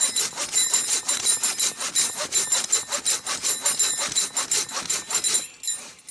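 Silky Gomboy folding saw cutting through a log just under 20 cm thick, in quick, steady rasping strokes that stop about a second before the end.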